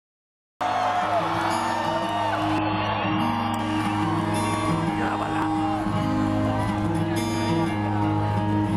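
A live rock band playing over a festival PA, with a steady low bass drone and repeated guitar notes. The crowd whoops and shouts over the music in the first couple of seconds. The sound starts abruptly about half a second in.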